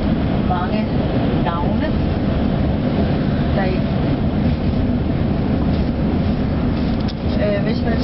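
Steady low rumble of a moving vehicle heard from inside its cabin, with faint snatches of voices now and then.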